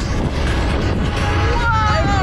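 Wind rushing over the microphone of a moving roller coaster, with a steady low rumble. In the second half a rider lets out a long scream that falls in pitch.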